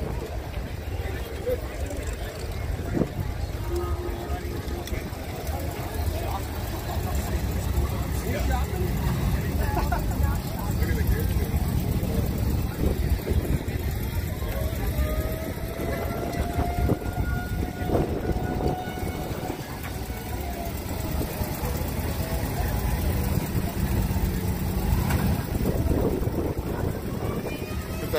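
Crowd of people talking over one another outdoors, with a steady low rumble underneath. A faint held tone drifts slightly in pitch around the middle.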